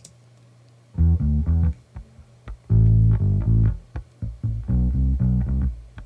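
A solo bass line played back through an EQ that high-passes everything below 45 Hz and cuts exaggerated notches, giving a more controlled low end. It starts about a second in, in short phrases of sustained low notes.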